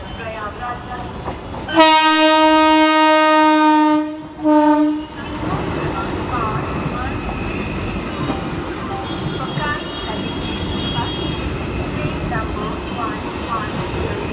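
Vande Bharat Express (Train 18) electric train sounding its horn: one long steady blast about two seconds in, then a short second blast. It is followed by the steady rumble and rush of the train's coaches passing close by.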